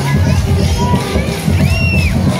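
Loud music with a bass beat under the chatter of a large crowd, with children's high-pitched shouts, the clearest near the end.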